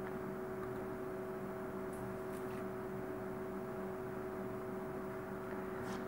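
Steady electrical hum and hiss of room tone, with two unchanging tones, and a couple of faint clicks about two seconds in.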